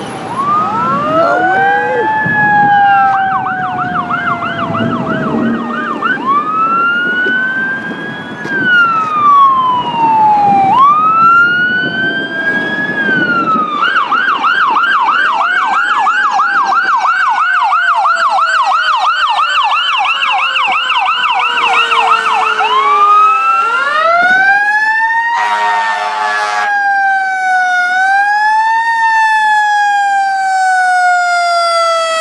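Electronic emergency sirens of an ambulance and a fire engine responding, switching between a slow rising-and-falling wail and a fast yelp, with engine and traffic rumble in the first half. A brief horn blast sounds about five seconds before the end, after which a wail carries on.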